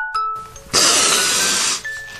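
A chiming, glockenspiel-like tune of single ringing notes. About a second long, a loud rush of noise rises over it in the middle, then stops.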